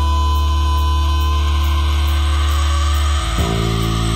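Live rock band playing: an electric guitar holds one long lead note over a steady bass line and drums, and the bass moves to a new note about three seconds in.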